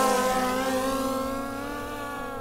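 Skydio 2 quadcopter drone's propellers whining, a steady multi-pitched buzz that dips slightly in pitch near the start and gradually fades as the drone is flown sideways.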